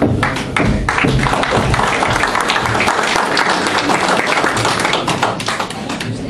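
Audience applauding: dense clapping that starts suddenly and eases off near the end.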